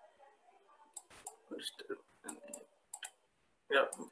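Faint computer mouse clicks, several scattered over a couple of seconds, with a few soft voice sounds between them.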